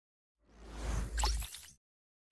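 Whoosh sound effect for an animated graphic: a rush of noise that starts about half a second in, swells and fades within about a second and a half, with a deep rumble underneath.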